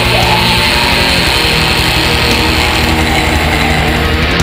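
Raw black metal: heavily distorted electric guitar over fast, dense drumming, loud and steady.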